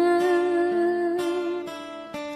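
Acoustic ska-style cover song: a singer holds one long sung note over strummed acoustic guitar, the note fading near the end.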